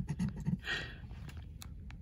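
A metal scratcher tool scraping the latex coating off a scratch-off lottery ticket in short strokes, with a few small ticks as it lifts and touches down.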